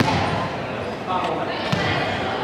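A volleyball bounced on a wooden sports-hall floor before a serve, two sharp bounces about a second and a half apart, with voices chattering in the hall.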